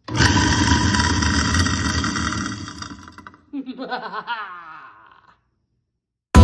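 An InSinkErator food waste disposer is switched on and starts at once, grinding food scraps loudly. After about three seconds the noise tapers off, while a woman laughs over it.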